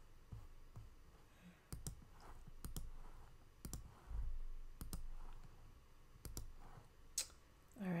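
Faint computer mouse clicks, single and in quick pairs, coming roughly once a second.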